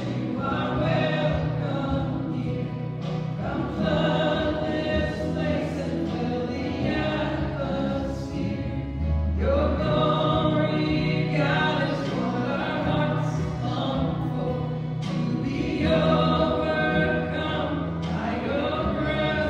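Church hymn sung over steady instrumental accompaniment, with sustained, slowly moving vocal lines: music for the offertory, as the gifts are brought to the altar.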